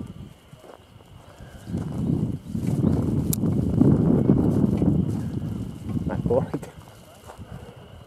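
Wind buffeting an outdoor camera microphone: a low rushing that swells for about four seconds and then dies away, with one sharp click in the middle.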